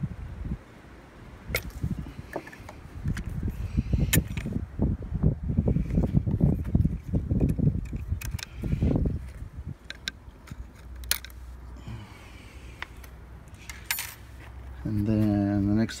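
Scattered light metal clicks and clinks of small parts and tools being handled on an outboard motor's powerhead, over an uneven low rumble.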